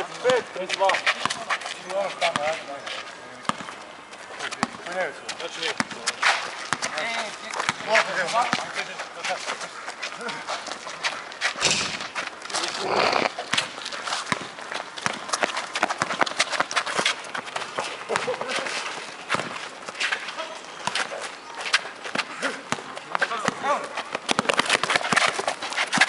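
Outdoor pickup basketball game: players calling out to each other, with the ball bouncing and running footsteps on the asphalt court as many short sharp knocks.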